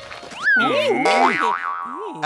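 Cartoon comedy sound effect: a springy boing whose pitch slides and wobbles up and down, starting suddenly about half a second in, over background music.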